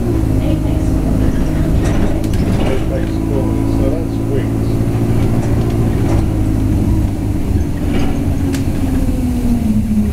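A London bus's engine running steadily, heard from inside the passenger cabin; near the end its note falls as the engine slows.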